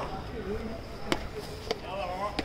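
Footsteps of hard-soled leather shoes on stone steps: three sharp steps, the second about a second after the first and the third about half a second later, with faint voices in the background.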